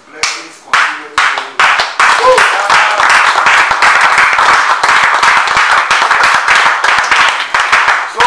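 A group of people clapping their hands. A few separate claps come first, then it builds about two seconds in into loud, dense, irregular applause that carries on to the end.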